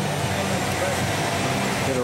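Vincent screw press running steadily as it presses citrus pulp, giving a constant machine hum from its motor drive under a steady haze of noise.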